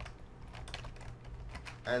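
Typing on a computer keyboard: a few irregular keystrokes.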